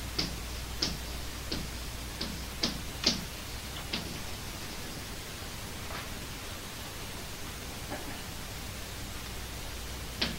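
Chalk striking and scraping on a blackboard as a word is written: about seven short clicks in the first four seconds, then two more spaced out, over a steady tape hiss.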